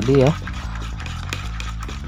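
Plastic spatula stirring a wet flour-and-egg bait batter in a plastic bowl, faint and even, under steady background music.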